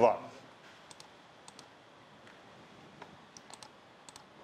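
Several faint, irregular clicks from a laptop being operated, with pauses between them.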